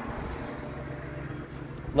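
A steady low mechanical hum over faint background noise.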